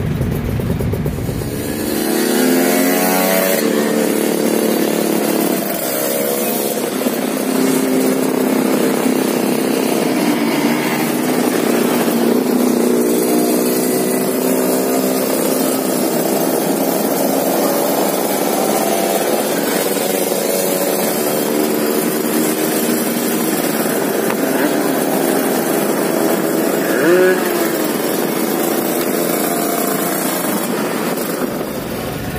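Two-stroke Kawasaki Ninja 150 RR sport motorcycles running on the road, their engines revving up and down so the pitch keeps rising and falling.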